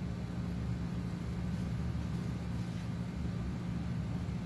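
A steady low hum with even room noise underneath, unchanging throughout.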